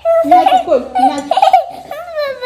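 A toddler's loud, high-pitched vocal outburst: drawn-out whiny squeals that break off and start again, on the edge of crying.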